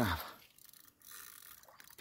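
Faint mechanical whirring of a fishing reel as a hooked fish is played on the line.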